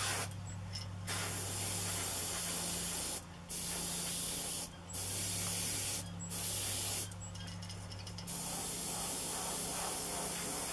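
Gaahleri GHAD-39 airbrush spraying a black base coat. A steady high hiss is cut off by short pauses about five times as the trigger is let off, with a longer, softer stretch about seven seconds in. A low steady hum runs underneath.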